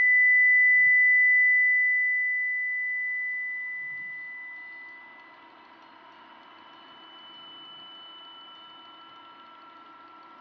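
Sustained electronic sine tones. A high steady tone swells in, holds loud for about two seconds, then fades away over the next few seconds, leaving quieter steady tones beneath. A higher tone enters about seven seconds in and stops near the end.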